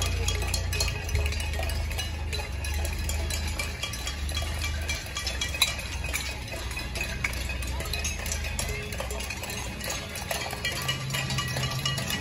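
Continuous clanking and ringing from people lining the street, dense and without pause, over a low steady rumble of cars rolling slowly past.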